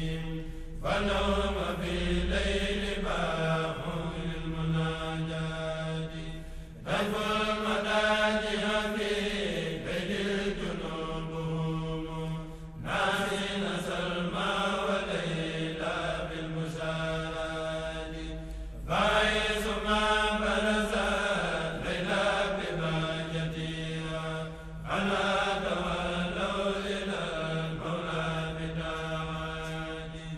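Melodic chanting in long phrases, a new phrase starting about every six seconds, typical of religious chant.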